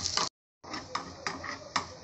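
A metal spoon stirring cumin seeds, garlic and green chilli in hot oil in a small aluminium kadhai, ticking against the pan several times over a light sizzle. The sound cuts out completely for a moment about a third of a second in.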